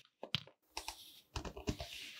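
Kitchen knife cutting through kinetic sand: a scattered run of crisp taps and soft thuds as cut slabs of sand crumble and fall and the blade meets the surface below, busiest in the second half.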